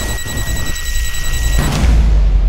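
Electronic timer beep: one long, steady high tone at the end of a spoken countdown, over a low rumble. Near the end it cuts off into a rising swell and a deep boom.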